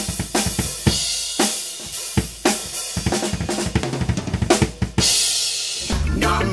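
Trick Drums drum kit played in a steady rock groove of snare, bass drum and hi-hat. A cymbal crash rings out near the end.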